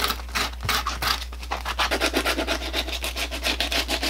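Hand-held 60-grit sandpaper scrubbing rapidly back and forth over a rubber boot sole, many quick scratchy strokes, roughing up the rubber so the shoe-repair glue will bond.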